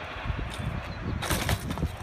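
BMX bike on concrete with a low wind rumble on the phone microphone, then a quick run of sharp knocks and clatter in the second half as the rider bails and the bike hits the ground.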